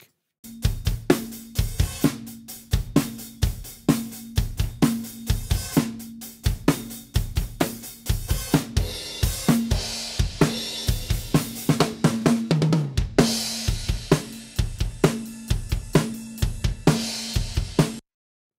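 Raw acoustic drum kit recording played back as a rough level-and-pan mix of close mics, overheads and room mic: a steady kick, snare and hi-hat groove at about 120 beats per minute, with a tom fill about twelve seconds in and cymbal crashes a little past halfway and near the end. It is essentially unprocessed sound off the preamps, with the snare ringing.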